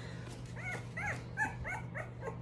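Three-week-old puppy whimpering: about five short, high-pitched cries, each rising and falling in pitch, through the second half.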